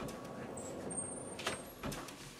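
An office door being opened, with a few light clicks near the end over a low, steady room noise.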